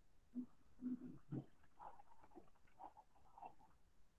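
Faint squeaks and rubbing of a duster wiped across a whiteboard in several short strokes.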